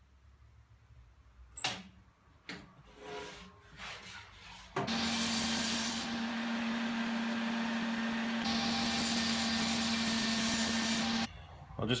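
A few knocks and rustles of a melamine board being handled on a table saw, then the table saw runs steadily with a strong hum, cutting the board. The saw sound starts abruptly about five seconds in and cuts off abruptly about a second before the end.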